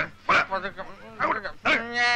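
Short vocal yelps from a man being manhandled, then a longer held cry near the end.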